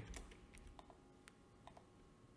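A few faint, scattered keystrokes on a computer keyboard over near-silent room tone, as a small value is typed into a parameter field.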